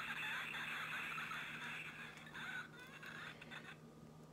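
Toilet-flush sound effect played from a children's board book's push-button sound module: a rushing hiss over a steady low hum, fading away near the end.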